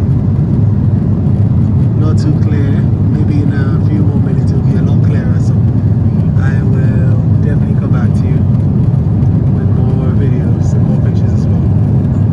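Steady airliner cabin noise: the low rumble of the engines and airflow, heard from a window seat inside the cabin.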